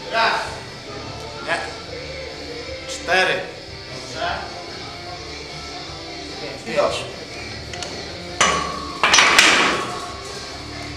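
Iron plates on a heavily loaded barbell clinking over background music as a Romanian deadlift is worked for reps, with short bursts of breath from the lifter. Near the end comes a louder, longer metallic clatter as the loaded bar comes down to the floor.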